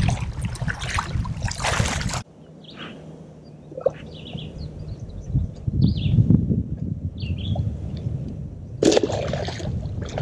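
Footsteps wading through shallow floodwater, splashing and sloshing loudly for the first two seconds. Then it is quieter, with birds chirping, until a burst of splashing about nine seconds in.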